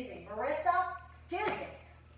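Speech only: a woman's voice in two short bursts, unclear words spoken while she dances.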